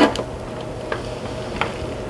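A few light clicks and taps as thick pudding is poured from a mixing bowl into an aluminium foil pan, over a steady faint hum.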